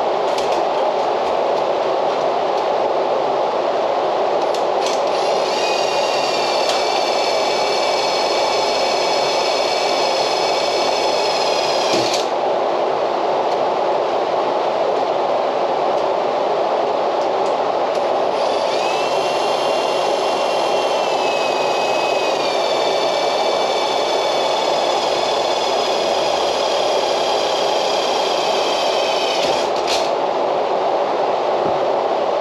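Cordless Ryobi driver's motor whining under load in two long runs, the first about five seconds in for seven seconds and the second from about eighteen seconds to near the end, with a brief dip in pitch in the second run. This is heard over a steady, loud background noise.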